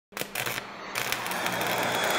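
Produced logo-intro sound effect: a few sharp mechanical clicks over a low steady hum, then a noise that grows steadily louder.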